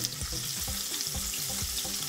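Butter sizzling in a frying pan around a salmon fillet, a steady hiss as it melts.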